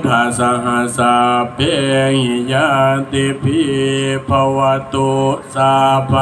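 A Buddhist monk chanting a Pali blessing in one male voice, holding mostly level notes in phrases broken by short pauses.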